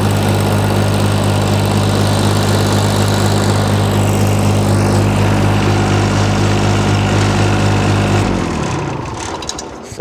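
Thermo King MD-100 refrigeration unit's diesel engine running steadily, then shut off about eight seconds in, its pitch falling as it winds down to a stop.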